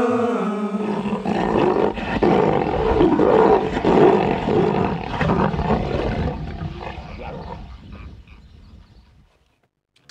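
A long, rough roar that fades away to silence about nine seconds in.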